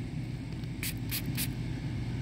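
Three short scratchy hisses about a second in, from fingers rubbing and turning a dirt-covered silver dime, over a steady low hum.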